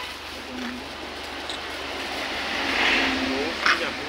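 A passing motor vehicle: a broad rushing noise that builds to a peak about three seconds in and then fades, with faint voices in the background and a short sharp click near the end.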